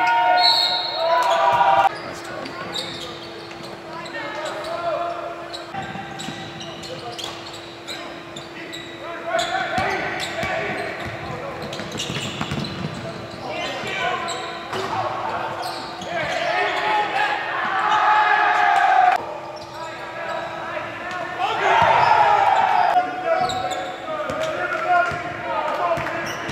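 Basketball dribbling on a hardwood court during a game, with players' voices echoing in a large gym and a steady hum running underneath.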